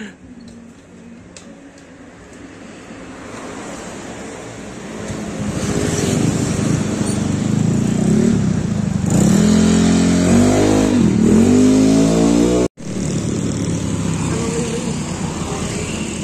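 Honda Beat ESP scooter's small single-cylinder engine running, getting louder, then revving with its pitch rising and falling from about nine seconds in until a sudden cut. The scooter is being test-ridden on a CVT with a custom-machined pulley and roller weights raised to 60 g in total to improve its top-end pull.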